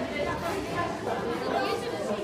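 Background chatter of many children's voices talking at once, overlapping, with no single voice standing out.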